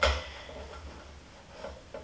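A short metallic clink of stainless-steel distiller parts as the steamer section is seated on the pot, right at the start. After it comes faint room tone with a low hum.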